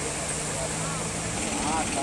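Several people talking at a distance over a steady outdoor rumble and hiss. A low steady hum stops about a second and a half in.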